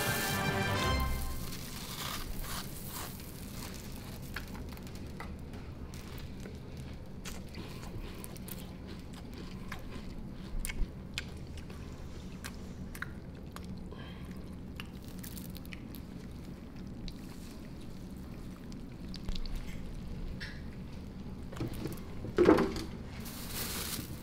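Milk pouring from a plastic gallon jug onto a heaped tub of Fruity Pebbles cereal, the flakes giving off a steady run of small crackles and ticks. A brief louder sound near the end.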